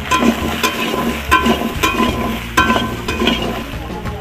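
Metal spatula stirring vegetable chunks in hot oil in a steel karahi, frying sizzle throughout. About six sharp clinks ring out as the spatula knocks and scrapes against the pan.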